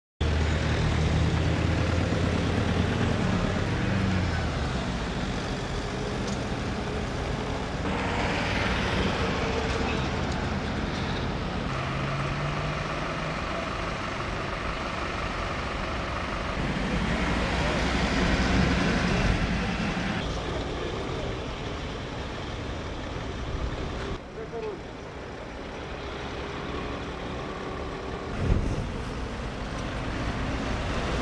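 Road traffic: car and truck engines running and passing on a busy street, with the sound changing abruptly every few seconds.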